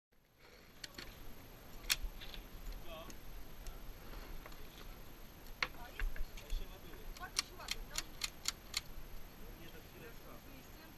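Cartridges being pushed one at a time into a lever-action rifle's loading gate: sharp metallic clicks, scattered at first, then a quick run of about three a second near the end. Faint voices in the background.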